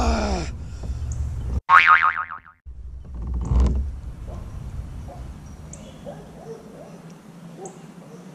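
A cartoon-style 'boing' sound effect: one short springy twang with falling pitch about two seconds in, cut in with abrupt silence before and after it.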